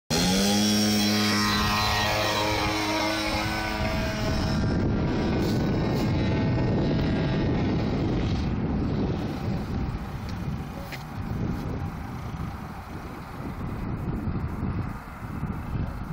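Radio-controlled model airplane's DLE-55 gasoline two-stroke engine opened up to full throttle for takeoff, its pitch rising within the first second. About four seconds in the tone drops out and a fainter steady rushing drone remains as the plane climbs away into the distance.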